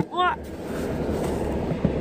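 Steady road and engine noise inside a moving car's cabin: an even, low-weighted hum with a lighter hiss above it.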